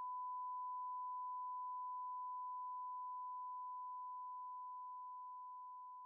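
A single steady, high-pitched electronic sine tone, a pure note that slowly grows fainter.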